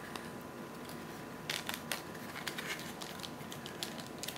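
Quiet handling of toy packaging: a few soft clicks and rustles from a cardboard insert and the plastic bag around a toy watch, mostly between one and a half and two and a half seconds in, over steady room hiss.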